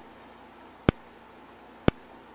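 An EST Genesis G1R-HOV30 horn strobe's strobe ticking once a second as it flashes. The horn stays silent because its sounder is broken.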